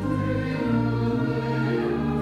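Slow church music with sustained chords and choral singing, the chords moving on every half second or so.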